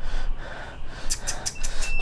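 A person breathing hard, with a quick run of sharp gasping breaths a little past the middle.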